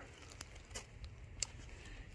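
Quiet pause with a few faint, brief clicks and rustles from shotgun shells being handled in gloved hands.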